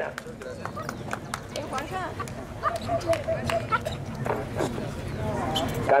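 Ringside background of crowd voices and calls with scattered sharp clicks, and young German Shepherd dogs whining and yipping in short high calls.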